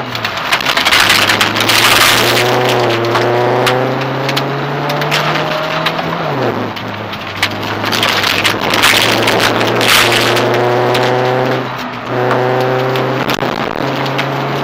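Rally car engine heard from inside the cabin, pulling hard on a gravel stage, its pitch climbing and dropping sharply twice, about six and twelve seconds in. Gravel hisses under the tyres and loose stones clatter against the underbody and wheel arches.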